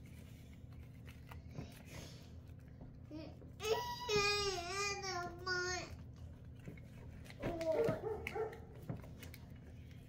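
A toddler's wavering, drawn-out cry or whine about four seconds in, lasting around two seconds, followed by a shorter one near eight seconds.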